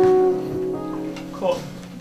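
A plucked guitar note rings on and fades away, with a few fainter notes ringing under it. A single spoken word cuts in about a second and a half in.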